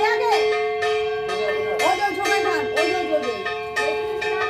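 A puja bell rung over and over in quick succession, its strikes blending into a continuous metallic ringing, with voices mixed in.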